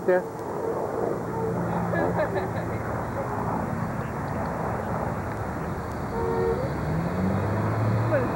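A steady rushing outdoor noise, with faint voices in the background.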